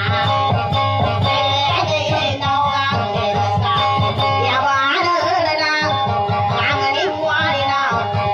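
Live dayunday music: an acoustic guitar played with a steady beat, with a voice singing over it.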